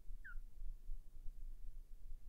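Quiet low room hum, with one brief faint falling squeak about a quarter of a second in.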